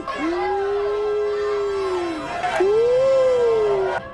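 Howling: two long, drawn-out howls, the second starting about two and a half seconds in and pitched a little higher than the first.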